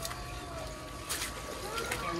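Handling noise and a low rumble on the microphone as the hand-held camera is carried down from the roof, with two light knocks, one about a second in and one near the end.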